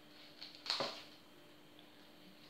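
A brief rustle and patter of small foam beads tipped from a plastic bag onto a tray, about 0.7 seconds in, after a faint click.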